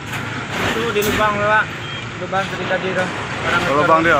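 Truck engine idling with a steady low rumble, under a man's short, broken-up speech.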